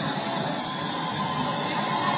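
Electronic dance track played over a speaker, in a hissing noise build-up that grows steadily louder, with faint held synth tones underneath.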